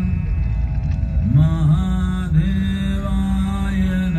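Devotional mantra chanting set to music over a steady low drone. The voice enters with a rising glide about a second in and then holds long notes.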